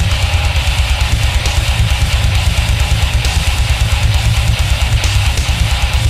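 Heavy metal band music: distorted electric guitars over a drum kit, with a fast, even pulse in the low end.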